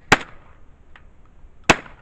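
Shotgun fired twice, about a second and a half apart; each shot is a sharp crack with a short fading tail.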